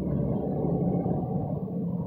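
Steady low rumble of a car in motion, engine and road noise heard from inside the cabin, with a faint steady hum.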